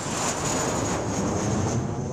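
A steady rushing noise, like a whoosh, with a faint thin high tone riding on top, beginning to ease off near the end.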